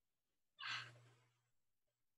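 A person breathing out once, a short sigh picked up by a video-call microphone about half a second in and fading away within a second, over a faint low hum.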